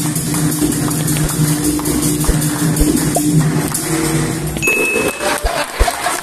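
Capoeira percussion playing live: a pandeiro's jingles and skin strikes in a quick steady rhythm over sustained low tones. A short high tone sounds near the end.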